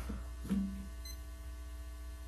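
Steady electrical mains hum with many overtones on the microphone feed, with one short spoken syllable about half a second in.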